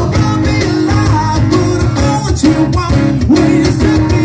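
Rock band playing live in an acoustic set: strummed acoustic guitars, bass guitar and drums keeping a steady beat, with a singer's voice over them.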